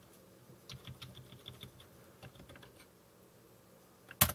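Faint typing on a computer keyboard: a quick run of light key clicks that thins out past the middle.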